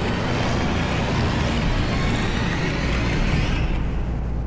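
Steady drone of a light aircraft's engine and propeller with rushing wind noise, heard from inside the cabin in flight.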